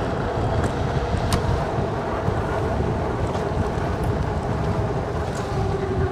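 Wind rushing over the microphone, with tyre and road noise, from an e-bike riding at close to 30 mph, and a faint steady whine underneath.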